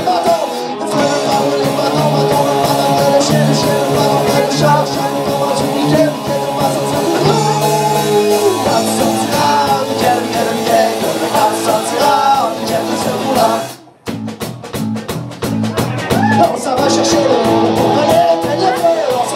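Live metal band playing: distorted electric guitar, bass and drum kit. About 14 seconds in the band stops dead for a moment, then comes back with short stabbed hits before the full sound resumes.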